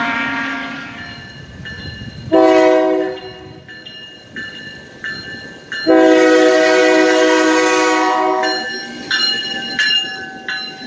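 Iowa Interstate diesel locomotive's air horn sounding as the train approaches: a short blast about two seconds in, then a long blast of nearly three seconds from about the middle.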